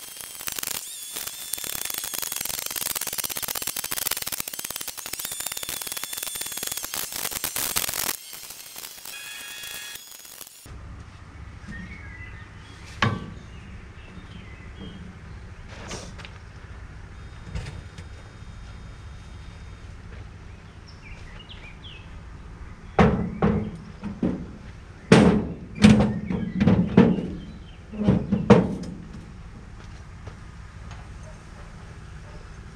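A loud, even rushing noise that cuts off suddenly about ten seconds in. Then come scattered knocks and scrapes of shovel work in sand and against a metal trailer, ending in a run of heavy thuds near the end.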